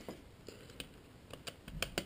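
Faint, scattered clicks and taps of hard plastic as the Acer Aspire One D270 netbook's screen bezel is handled, a handful coming in the second half.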